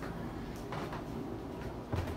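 Low, steady kitchen room noise with faint handling rustle, ending in a soft low thump as the camera is moved.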